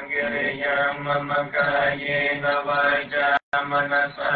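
Buddhist chanting: male voice(s) reciting in a steady, sustained chant tone. The audio cuts out for a split second about three and a half seconds in.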